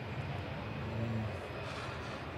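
A low, steady background rumble with no speech.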